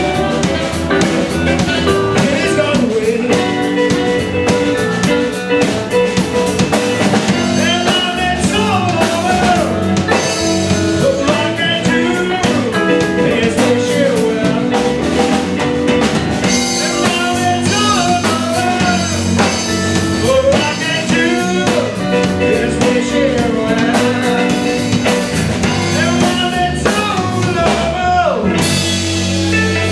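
A live blues band plays: electric guitar, bass and drum kit keep a steady groove while bending melody lines run over the top.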